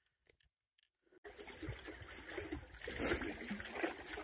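Near silence for about the first second, then water trickling and flowing along a concrete channel.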